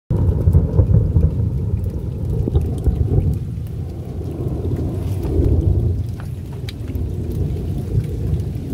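Heavy rainstorm: a loud, steady low rumble with scattered sharp ticks of raindrops.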